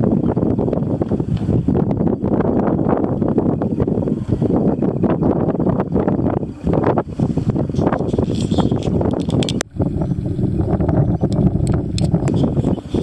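Wind buffeting the microphone in loud, gusty rushes, with a brief sudden drop about ten seconds in.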